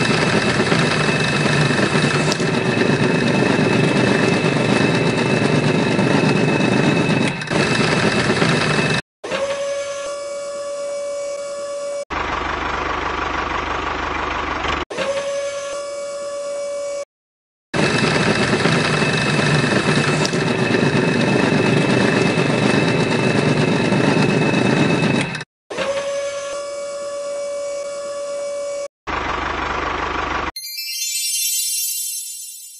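Small motor of a model tractor's auger attachment running as the auger bores holes in sand. A steady high whine alternates with louder, rougher stretches, and the sound cuts off abruptly several times.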